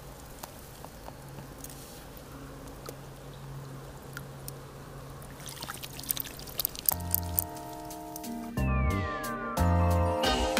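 Soft water sounds and small splashes as a grayling is let go in the shallows and swims off, the splashing rising about five seconds in. About seven seconds in, music starts with deep beats and a falling tone, and it soon becomes the loudest sound.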